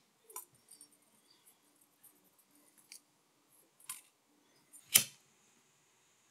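Scattered small clicks and taps of hands handling thin enamelled copper wire and a small plastic coil holder. About five seconds in comes one sharp click of a lighter being struck, followed by a faint steady hiss from the lit flame.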